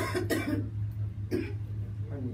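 A woman coughing: three coughs, two close together at the start and a third about a second and a half in.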